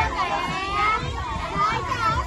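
Many children talking at once: a lively hubbub of overlapping young voices.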